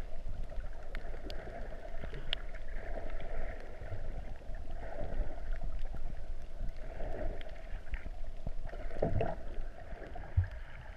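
Muffled underwater water noise picked up by an action camera held below the surface: a steady swishing that swells and fades every couple of seconds, with a few faint clicks and a stronger swell near the end.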